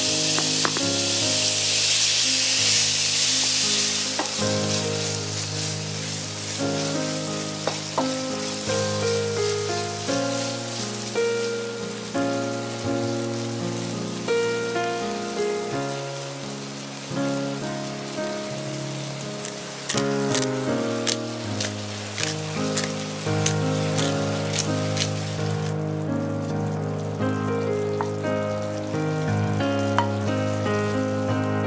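Ground beef sizzling in oil in a nonstick frying pan, loudest in the first few seconds and then quieter. Background music plays throughout, and a run of light ticks comes a little past the middle.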